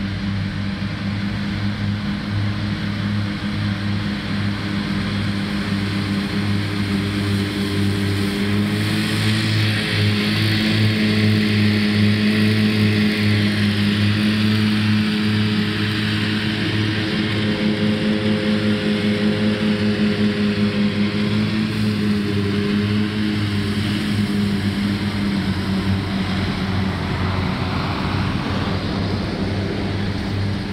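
Tractor diesel engine running steadily under load while driving a front-mounted disc mower through grass, the mower adding a whirring hiss. It grows louder as the machine comes close, loudest from about ten to fourteen seconds in, then eases a little.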